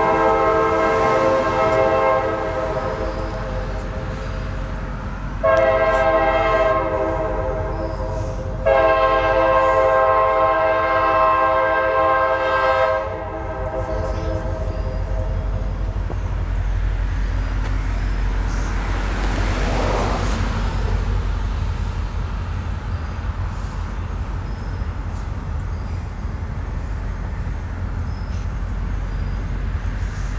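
CSX diesel locomotive's air horn sounding long blasts for a grade crossing, each a chord of several tones. The last two start abruptly about five and nine seconds in, and the horn fades out by about halfway. After that comes the low, steady rumble of the train rolling through the crossing, with the locomotive and covered hopper cars passing.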